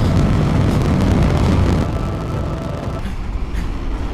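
Rocket engines of a launch vehicle climbing: a loud, deep, steady rumble, easing slightly in the last second.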